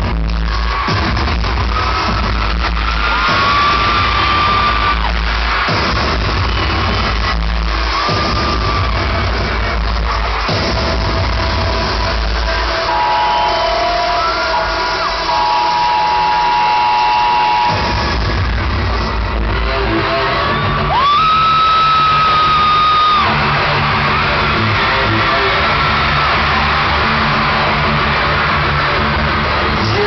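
Loud electronic intro music played through an arena PA, its deep bass cutting in and out and dropping away for a few seconds about halfway through, with high screams from the crowd over it.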